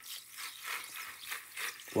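Water and wet gravel concentrates sloshing and sliding inside a plastic bucket as it is tilted, a gritty wet rustle that starts suddenly and wavers in loudness.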